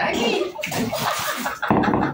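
Water pouring and splashing over a woman's head, mixed with her squealing laughter, with a fresh loud splash near the end.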